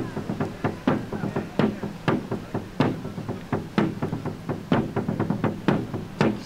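Sharp knocks repeating irregularly, about two or three a second, over a low steady hum.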